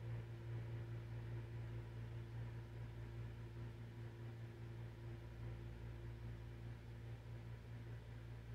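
Quiet room tone: a steady low hum with a few faint steady tones above it and a light hiss.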